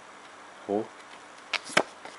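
Two sharp clicks close together about a second and a half in, from the stiff Pokémon trading cards being flicked and slid over one another in the hand as the next card is brought forward.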